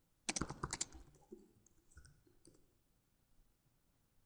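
Computer keyboard keys tapped in a quick run of about eight to ten clicks, then a few single clicks about a second in, at two seconds and at two and a half seconds.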